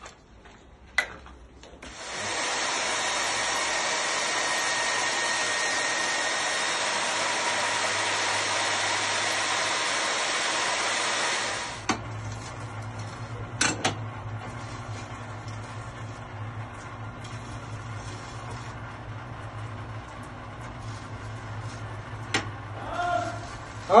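Tyrolit core drilling machine's electric motor running loud and steady for about ten seconds, starting about two seconds in and stopping suddenly. Then a quieter, steady low running hum, with a few clicks, as the water-fed diamond core bit works against the wall.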